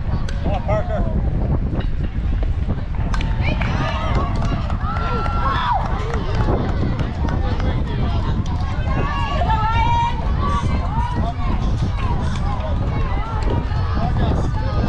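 Scattered voices of spectators and players talking and calling out around the ball field, over a steady low rumble of wind on the microphone.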